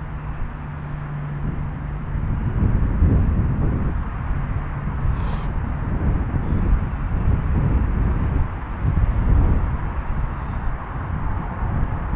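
Outdoor town street ambience: an uneven low rumble of traffic and wind on the microphone. A steady low hum runs for the first two seconds or so, then fades.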